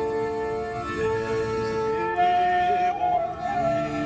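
Accordion and saxophone playing a Yiddish folk tune in long held notes over sustained accordion chords.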